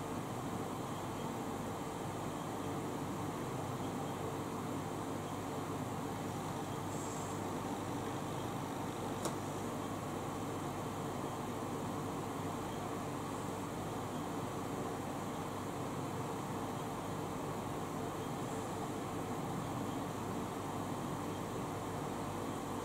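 Electric fan running steadily: an even hiss with a faint hum, broken once by a small sharp click about nine seconds in.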